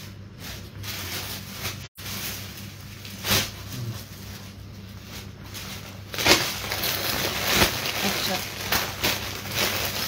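Clear plastic clothing bags rustling and crinkling as they are handled, with one sharp crackle a few seconds in and louder, busier crinkling from about six seconds in, over a steady low hum.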